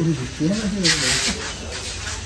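Background voices of people talking, with a short hiss about a second in.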